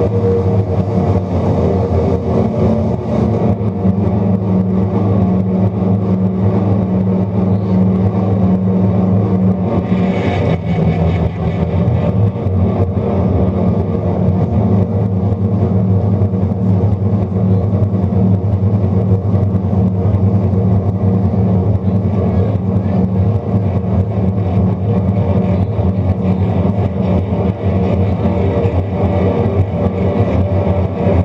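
Live instrumental rock from a drum kit and an electric guitar, loud and dense, with a droning low end that shifts about ten seconds in.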